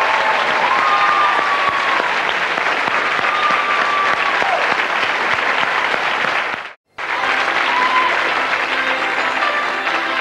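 Television studio audience applauding, with a few held notes ringing over it. About seven seconds in the sound drops out for an instant at an edit, then applause resumes with the next song's music beginning under it.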